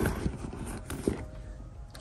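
Hands packing items into a leather handbag: soft handling rustle with a few light taps as things knock against each other inside the bag.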